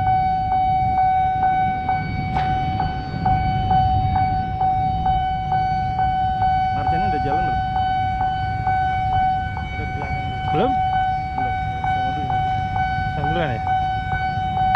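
Railway level-crossing warning alarm ringing: a steady high electronic tone with quick bell-like strikes about three times a second. It sounds over the low rumble of motorbike and car traffic waiting at the crossing.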